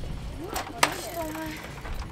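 Wind buffeting the microphone with a steady low rumble. Two sharp clicks come about half a second and just under a second in, the second one the loudest, with faint voices in the background.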